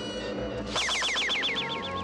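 Cartoon magic-spell sound effect over sustained background music: a little under a second in, a quick repeating falling electronic warble starts, about eight sweeps a second, and fades away toward the end.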